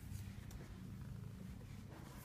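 Domestic cat purring steadily as a low, fast rumble while it is stroked, close to the microphone.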